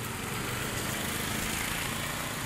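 Car engine running as the car drives slowly through floodwater, with a steady wash of water thrown aside by its tyres.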